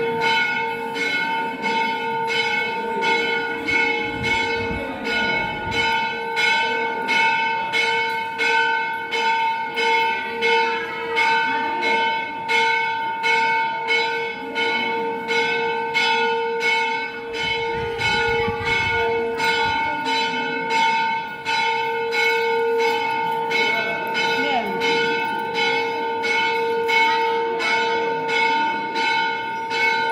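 Temple bell rung continuously at an even beat, about three strokes every two seconds, its ringing tone sustained between strokes, echoing through the stone hall, with crowd chatter underneath.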